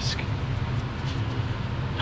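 A steady low machine hum with an even hiss over it, unchanging through the pause between spoken phrases.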